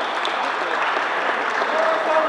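Crowd of spectators applauding at the end of a badminton rally, with some voices calling out among the clapping.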